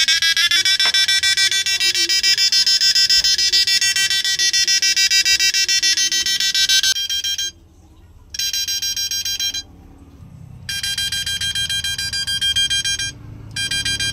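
Loud, high-pitched electrical buzz with many overtones from an Arduino-controlled IGBT driver running a 1000-watt quartz heater-lamp load, switching at about 800 Hz. The buzz drops out for about a second twice in the second half, and once more briefly near the end.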